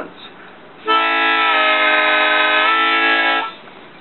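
TurboSlide harmonica, a Seydel Silver–based diatonic with stainless steel reeds, sounding a held blow chord for about two and a half seconds. The whole chord dips slightly flat in the middle and comes back up, several notes bent at once with its magnetic slide.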